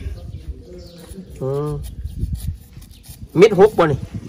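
A woman's voice: a brief hummed 'mm' about a second and a half in, then talking loudly near the end, with a few faint knocks of kitchen handling in between.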